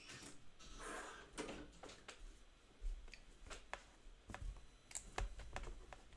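Faint, irregular clicks and taps of a computer keyboard being typed on, with a soft rustle in the first two seconds.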